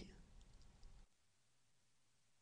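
Near silence: faint room tone with a few small clicks, cutting to dead silence about a second in.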